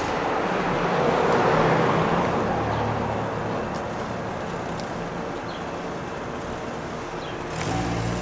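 A passing car, rising to its loudest about a second and a half in and then slowly fading.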